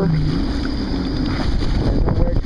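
Jet ski engine running over rough water, with wind buffeting the microphone. Irregular splashing and slapping against the hull sets in after about a second and a half.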